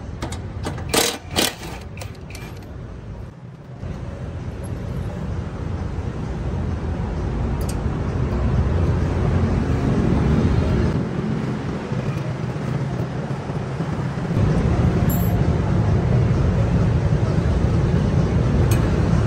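Cordless impact wrench rattling in two short bursts about a second in, undoing a nut on the tiller's blade-shaft bearing housing. Then a low rumble builds and carries on through the rest.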